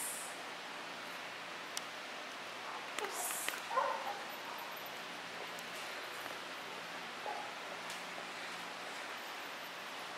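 A large black-and-tan dog gives a brief pitched whine about three and a half seconds in, and a fainter one around seven seconds, over a steady background hiss.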